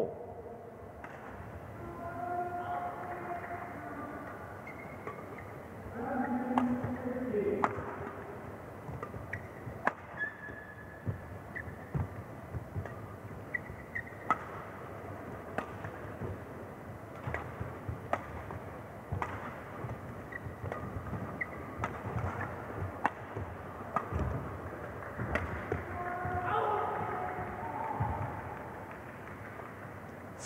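Badminton rally in an indoor hall: sharp racket hits on the shuttlecock come roughly a second apart through the middle, with brief high squeaks from shoes on the court mat. Voices murmur in the hall near the start and near the end.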